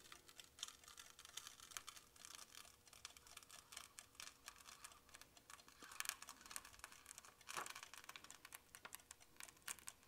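Faint crackling of a printed transfer sheet being peeled slowly off a wet InkAid-coated panel: a steady run of small clicks as the film lets go, with two louder crackles about six and seven and a half seconds in.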